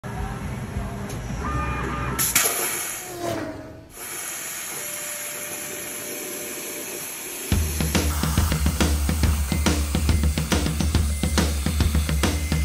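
CNC plasma cutter torch cutting through metal plate: a steady hiss that starts about two seconds in. Rock music with a heavy beat comes in about seven and a half seconds in and plays over the rest.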